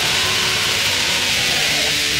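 Raw, lo-fi black metal: a dense wall of distorted guitar, bass and drums, heavy with hiss, with a few held chord tones underneath. It plays at a steady level throughout.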